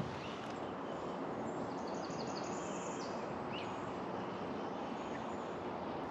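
Steady outdoor background noise of a wooded creek, with a few faint, brief wild bird calls about two to four seconds in.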